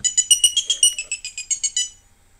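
Grove piezo buzzer on a LaunchPad playing the example sketch's note sequence as a rapid run of short, high-pitched electronic beeps that step between a few pitches. The sequence stops just before the end.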